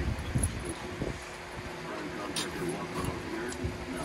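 Border collie and pit bull puppy play-wrestling on a rug: irregular scuffling and a few soft thumps, with faint low dog grumbles.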